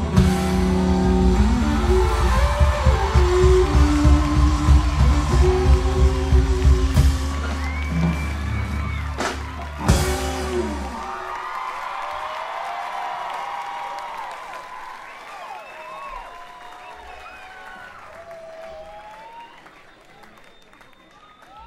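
A live rock trio of electric guitar, bass and drums plays the closing bars of a song and ends on a final hit about ten seconds in. Crowd cheering and applause follows and fades away.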